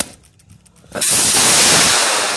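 Model rocket motor firing at liftoff: a loud rushing hiss that starts suddenly about a second in and keeps going.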